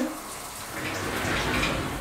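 Shower running: a steady spray of water.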